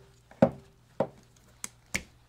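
Red-handled hand wire strippers clicking as they cut and pull back the insulation on the tail light harness wire: four short, sharp clicks spread across the two seconds.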